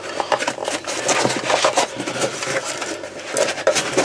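Handling noise from a plastic military canteen and its stainless-steel cup being worked in a fabric pouch: irregular rustling, scraping and small clicks.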